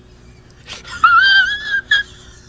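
A man crying: after a quiet moment, a high-pitched wavering wail about a second in, then a short squeak as it breaks off.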